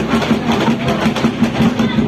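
Drum-cheer drum section playing a fast, steady beat, with voices shouting over it.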